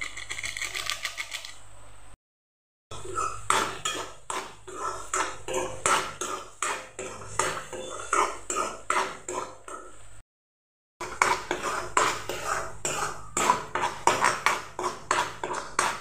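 A metal spoon scraping and knocking against a metal kadai as a thick masala is stirred, in a quick run of strokes. The strokes break off twice for a moment of total silence.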